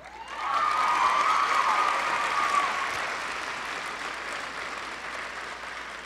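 Audience applauding: the clapping swells quickly, peaks over the first two seconds and then tapers off gradually. One long high-pitched call from a single person rises over the clapping in the first couple of seconds.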